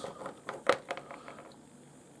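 A few light clicks and knocks in the first second, the loudest about two-thirds of a second in, then quiet: pieces of rough boulder opal being handled and swapped over by hand.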